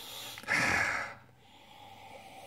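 A person sniffing once through the nose, about half a second in, taking in the aroma of a glass of beer.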